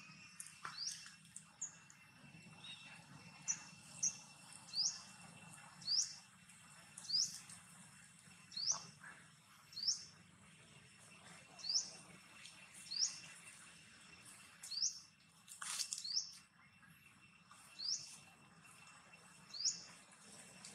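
A bird chirping over and over, one short high call about every second, over a thin steady high tone.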